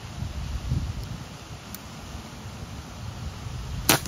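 A single sharp air rifle shot near the end, over low wind noise on the microphone.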